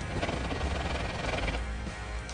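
Steel chisel in a honing guide scraped back and forth on a wet fine diamond whetstone plate, a gritty rasp that thins out about one and a half seconds in as the chisel is lifted off. Background music plays underneath.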